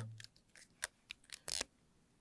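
A few faint, short clicks and taps, the loudest a quick double tap about a second and a half in.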